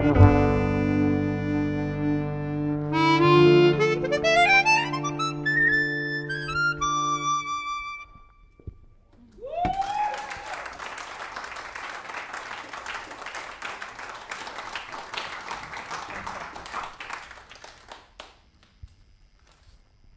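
A small jazz band led by chromatic harmonica finishes a piece on a held chord, with one line sliding slowly upward before the music dies away. After a short pause comes audience applause, opened by a brief rising whoop, which fades out near the end.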